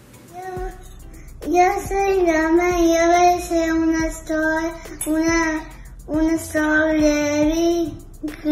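A child's voice singing a simple tune in long held notes, in several phrases with short breaks between them.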